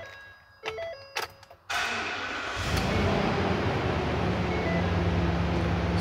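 Ford 6.2-litre SOHC gas V8 being started: a few clicks as the key is turned, the starter cranks from about two seconds in, and the engine catches quickly about half a second later, settling into a steady idle.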